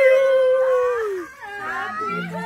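A woman's long, high-pitched wailing scream, held on one note and falling off about a second and a half in, followed by shorter cries and voices.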